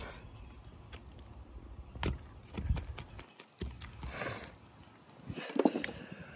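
Scattered knocks and clicks as a knife and a catfish carcass are handled on a wooden tabletop, with a short hissing rush about four seconds in and a brief low pitched sound near the end.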